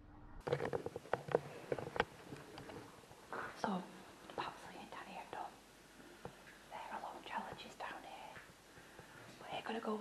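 Whispered speech close to the microphone, with a few sharp clicks in the first two seconds.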